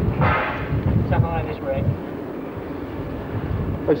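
Indistinct voices of people talking, one short remark about a second in, over a steady low rumble on the camcorder microphone. There is a brief noisy burst at the start.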